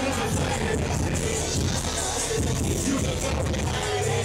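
Loud hip-hop music playing over a nightclub sound system, steady with a heavy bass line.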